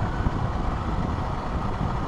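Hero XPulse 200 motorcycle running at steady riding speed, its single-cylinder engine blended with a steady rush of wind on the action camera's microphone.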